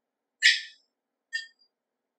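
Two short metallic clinks from the piston, connecting rod and taper ring compressor being handled: a sharp, ringing one about half a second in and a fainter one just under a second later.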